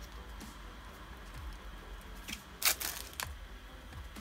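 A small cardboard cosmetics box being handled and opened by hand: quiet fiddling, then a few short, sharp rustling scrapes between about two and a half and three seconds in, over a low steady hum.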